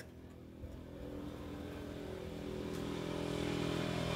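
A vehicle engine running at a steady pitch, growing steadily louder as it approaches.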